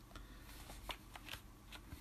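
Faint paper rustling with a few light taps spread through it: the pages of a stapled fanzine being handled and turned.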